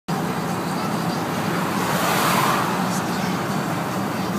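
VW Vanagon driving at highway speed: steady engine and road noise, with a brief swell of rushing noise about two seconds in.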